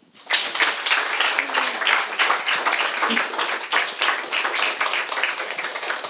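A small audience applauding, breaking out a moment in and keeping on steadily with many quick overlapping claps.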